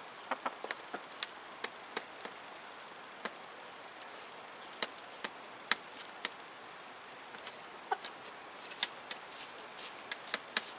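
White chickens pecking at vegetables on a wooden feeding board: irregular sharp taps of beaks striking the food and boards, a few of them louder, with a few quiet clucks among them.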